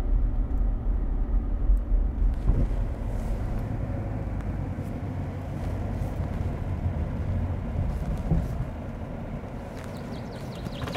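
A car driving, with a steady low rumble of engine and tyres that slowly fades toward the end.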